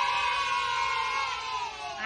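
A child's voice holding one long, high-pitched note that slides slowly down in pitch and breaks off at the end.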